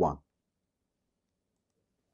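A spoken word ends just after the start, then near silence with a noise-gated, dead-quiet background.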